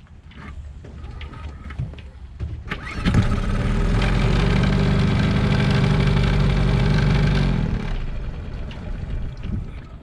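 Tohatsu 6 hp Sailmaster four-stroke outboard pull-started: it catches about three seconds in and runs steadily for about four and a half seconds. It then dies away, with the fuel line not yet connected, so it is running only on the fuel already in it.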